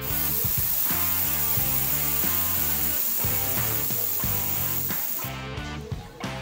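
Compressed air hissing out of the manual pressure-relief valve on a Gutstark oil-free air compressor's tank, pulled open to release the tank pressure; the hiss starts suddenly and cuts off about five seconds in. Background music plays underneath.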